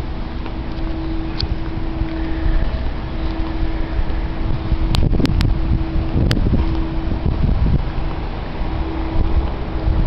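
Wind rumbling on the microphone over a steady low hum, with four sharp clicks about halfway through.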